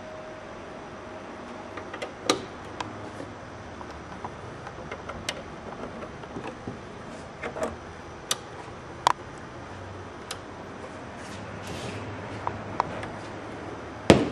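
Scattered sharp clicks and light knocks of patch-cable plugs going into the jacks of a Eurorack modular synthesizer, a dozen or so spread irregularly, over a low steady room hum.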